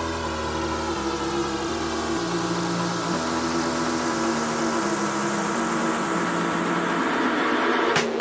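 Electronic dance music in a beatless breakdown. Held synth notes step through a slow bass line under a swelling wash of noise that builds slightly in loudness, with no kick drum.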